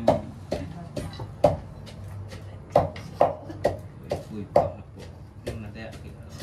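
Wooden pestle pounding sambal belacan in a mortar, mixed with knife cuts on a cutting board: sharp knocks, unevenly spaced, about two a second.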